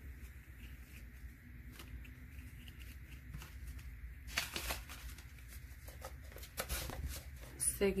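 Paper banknotes and paper envelopes rustling as bills are handled and slipped into an envelope, with a few sharper crinkles about halfway through and again near the end, over a low steady hum.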